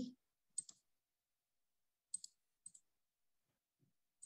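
Faint clicks of a computer mouse: three quick pairs, about half a second in, just after two seconds, and shortly after that, with near silence between them.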